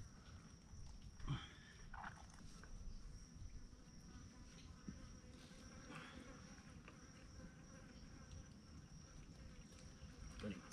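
Faint, steady high-pitched insect drone, with a few soft knocks and scrapes from a collapsible crab pot being handled.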